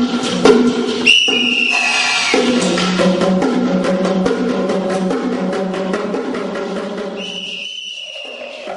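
Solo percussion playing: rapid strokes on drums and wood-toned instruments over pitched low notes. Twice a high whistle-like tone sounds, holding and sliding slightly down, once about a second in and again near the end.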